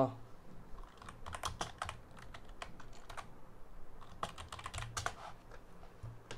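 Typing on a computer keyboard: two short runs of key clicks, one about a second in and another about four seconds in.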